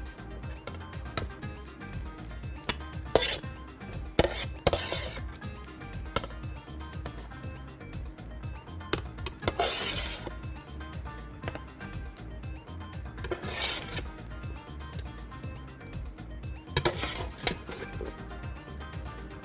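Roasted carrot sticks being served onto a ceramic plate with a serving utensil: a series of short scrapes and clinks of the utensil against the plate, over steady background music.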